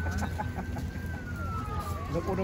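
A single thin, high-pitched tone holds steady, then about halfway through starts a slow slide down in pitch. Faint voices of people nearby and a low steady hum lie under it.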